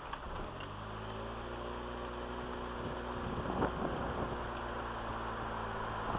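A car engine running steadily, a low hum that settles in about a second in, with a short knock near the middle.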